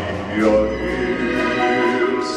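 A string orchestra playing a slow song, with a man's singing voice carried over it.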